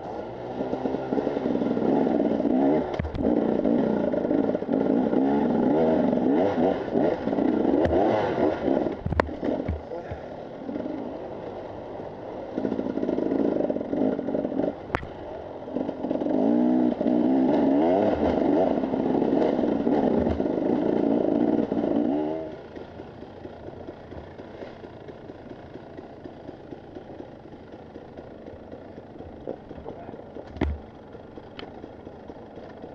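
Two-stroke enduro motorcycle engine, a Husqvarna TE 300, heard from the rider's helmet, revving up and down again and again as the throttle is worked over a rocky trail, with a few sharp knocks and clatter from the bike. About 22 seconds in the engine drops off sharply to much quieter low running.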